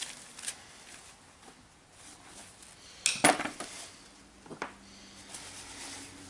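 Aluminium compressor parts and metal tools clinking and knocking on a cluttered workbench as the parts are handled. The loudest clatter comes about three seconds in, with a single sharper knock a second later.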